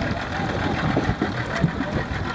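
Low, steady rumble of an idling boat engine over wind and choppy-water noise.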